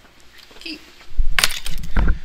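A short burst of clattering clicks and knocks over a low thud, starting just past a second in and lasting under a second.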